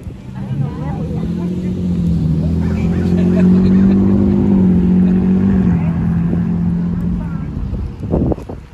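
A motor vehicle driving past on the street: its engine hum grows louder over a few seconds, drops slightly in pitch around the middle, and fades away near the end.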